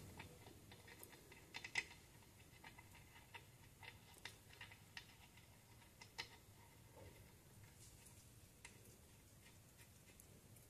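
Faint, irregular light clicks of a spanner on the bleed valve of a rear drum brake wheel cylinder as the valve is tightened, the loudest about two seconds in, over near silence.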